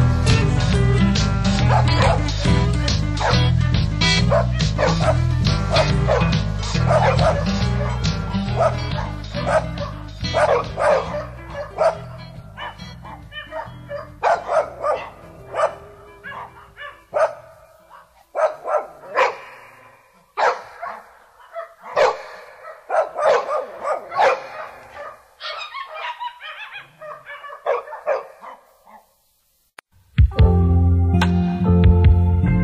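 A song's music fades out over the first dozen seconds, leaving a string of short dog barks and yips spaced irregularly, which stop a second or two before the end.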